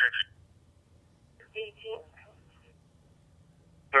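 Police dispatch radio voice played through a Uniden BCD436HP scanner's speaker, decoded P25 Phase II digital trunked radio: one transmission ends just after the start, a short garbled burst of voice comes about a second and a half in, and a new transmission begins at the very end. A faint low hum fills the gaps.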